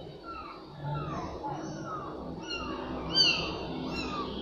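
Kittens mewing: a string of short, high, falling mews, a few to a second, with a louder, higher mew about three seconds in.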